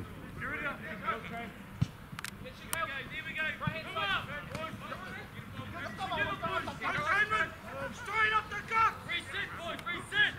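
Rugby players shouting calls to one another during open play: many short shouts, some overlapping, coming and going throughout.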